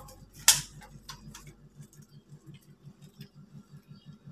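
Light handling clicks: one sharp click about half a second in and a few fainter taps after it, over a faint low ticking that repeats about five times a second.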